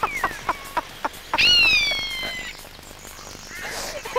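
Laughter, then, about a second and a half in, one long falling mewing call of a common buzzard, played from a recording.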